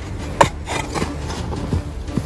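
A mattock striking dry, stony ground: one sharp strike about half a second in, then loosened dirt and rock fragments scraping and rattling, and a lighter knock near the end.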